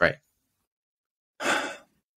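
A man's short "Right," then a single audible sigh, a breathy exhale lasting about half a second, near the middle, with dead silence around it.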